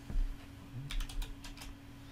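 Computer keyboard keystrokes: a few separate key taps entering a dimension value of 10 degrees.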